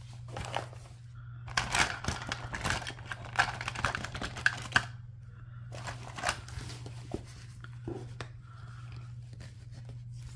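Pens, scissors and plastic supplies being handled in fabric and clear plastic pencil pouches: rustling, with clicks and taps as items are moved and slotted into pen loops. The handling is busiest in the first half and again a little past the middle, over a steady low hum.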